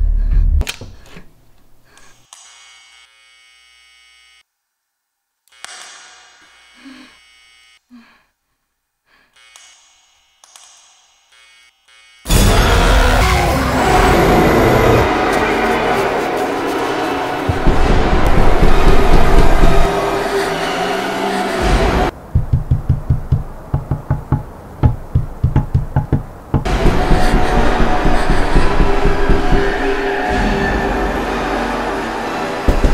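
Horror film soundtrack: a quiet stretch with a few faint sounds, then a sudden loud burst of scary music about twelve seconds in. Later a run of rapid knocking thuds, two or three a second, gives way to a loud swell again near the end.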